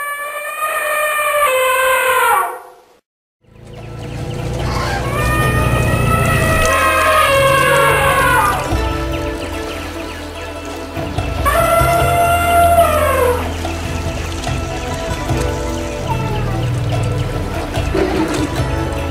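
Three long elephant trumpet calls, each rising and then falling in pitch: the first alone, the next two over background music with a steady deep bass that comes in about three and a half seconds in.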